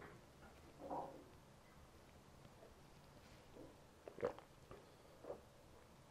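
Near silence: room tone, with a faint soft sound about a second in and a couple of faint small knocks later on.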